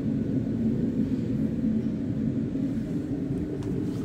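Steady low mechanical hum with a rumble beneath it, unchanging throughout.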